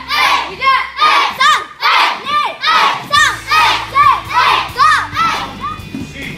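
A group of children in a karate class shouting together in time with their kicks, about two short shouts a second, each one rising and falling in pitch.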